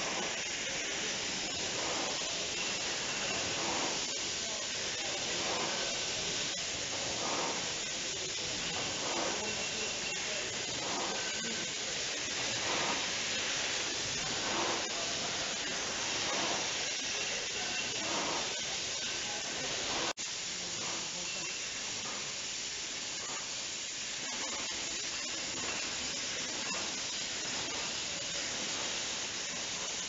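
Glass-bottle rinser-filler-capper triblock on a beer bottling line running: a steady hiss of spray and air over a faint, regular machine clatter. The sound breaks off for an instant about two-thirds of the way through.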